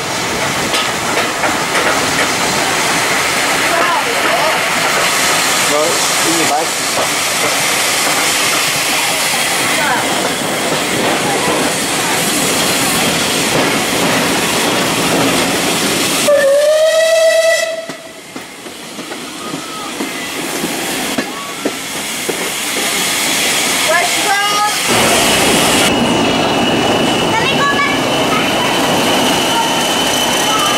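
Steady running noise of a heritage train heard from on board. About halfway through, a steam locomotive gives one short whistle, about a second long, whose pitch rises slightly. After it the running is quieter with brief wheel squeals, and near the end a steady high whine comes from an English Electric Class 40 diesel locomotive.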